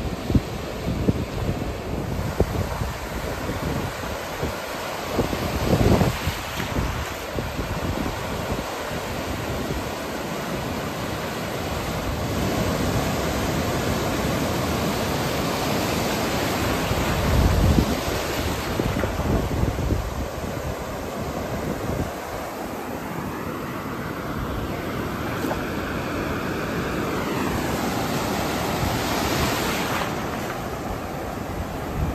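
Ocean surf breaking and washing in over shallow water on a sandy beach, with wind buffeting the microphone in gusts, strongest about six seconds in and again midway.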